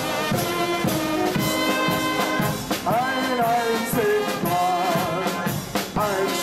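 A carnival guard's brass band plays a march-like tune: trumpets and trombones carry the melody over a bass drum and a marching snare drum beating evenly.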